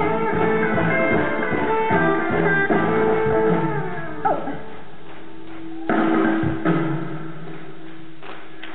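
Live rock band playing an instrumental passage of the song, with electric guitar over bass and drums. About four seconds in, the full band drops to a sparse break: one held low note with a couple of sharp accents.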